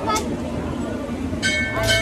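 Crowd chatter over a steady low rumble; about a second and a half in, several steady high tones begin.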